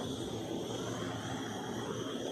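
Handheld butane torch burning with a steady hissing flame as it is passed over wet acrylic paint.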